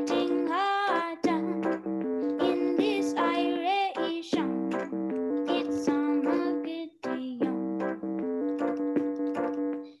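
A boy singing a reggae song while accompanying himself on an electronic keyboard. Held keyboard chords change every second or so under his gliding sung melody, and the sound drops out briefly about seven seconds in.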